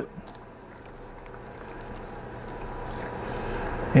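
Dry sphagnum moss rustling and crackling softly with a few light clicks as hands pack it around an orchid's root ball. The rustle is steady and grows a little louder toward the end.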